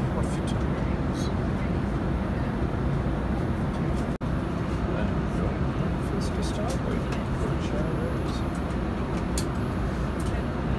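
Steady low drone of an airliner cabin in flight, the noise of the engines and the air rushing past, with a momentary gap about four seconds in.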